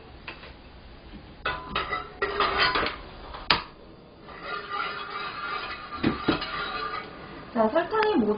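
A metal ladle clinks against an aluminium saucepan several times, then dishes are knocked down on the counter as plates are moved. A faint steady tone sounds in the middle.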